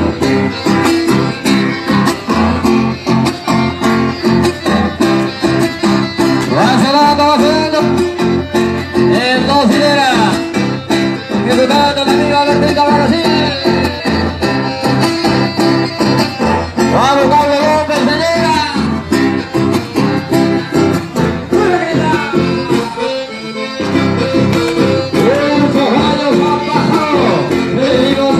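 Live dance music led by guitar, with a voice singing the melody; the music drops away briefly near the end before picking up again.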